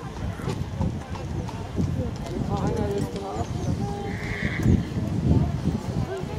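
Haflinger horse cantering on grass, its hooves making repeated low, muffled thuds, with voices in the background.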